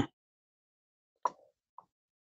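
Near silence broken by a short faint click a little past a second in, then a fainter tick about half a second later.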